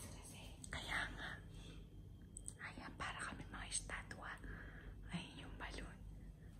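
Hushed whispering: several short whispered phrases, quiet and breathy.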